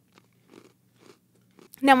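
Faint crunching of an Oreo cookie being chewed: a few soft, scattered crunches, with speech starting near the end.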